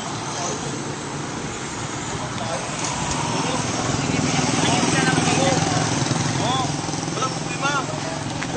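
Street noise: a motor vehicle engine running, growing louder toward the middle and then easing, with people talking nearby.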